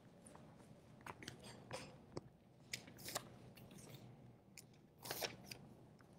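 Faint scattered clicks and rustles of a person moving about and handling things off-camera in a small room, with slightly louder rustles about three and five seconds in.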